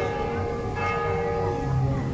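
Church bell ringing, struck again about a second in, its tones ringing on over low background rumble.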